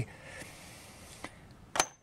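A faint tick, then near the end a sharp metallic click with a brief high ring, from a steel reverse twist drill bit being handled in its metal index case.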